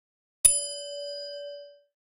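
A single notification-bell ding sound effect: one struck chime about half a second in that rings on and fades away over about a second and a half.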